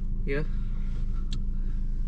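Car engine idling, heard inside the cabin as a steady low hum, with one short click a little past halfway.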